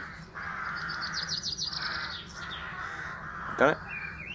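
Birds calling outdoors: a quick run of high chirps about a second in, over steadier, harsher calling.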